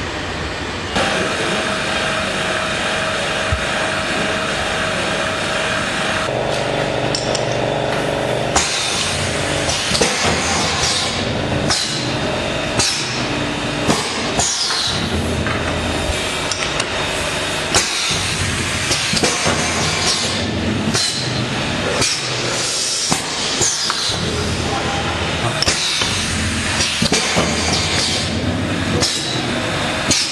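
PLC-controlled cover filling machine running: a steady mechanical hum at first, then from about eight seconds in, rapid irregular clanks and clinks of its mechanism handling the covers.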